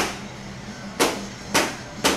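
Three sharp knocks, about half a second to a second apart, over a steady low hum.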